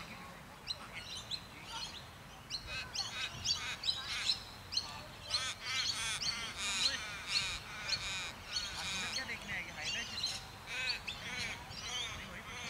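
Several birds chirping in quick, overlapping calls.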